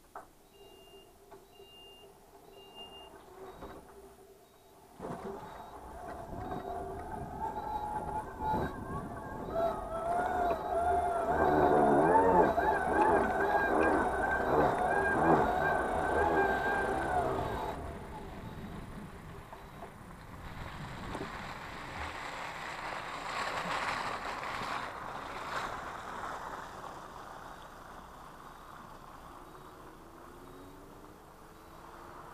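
Electric mobility scooter running: its drive motor whines and wavers in pitch as it moves off through snow, with a faint repeating beep, and both stop together a little past halfway. Then a rushing hiss swells and fades, like a car's tyres passing on the slushy road.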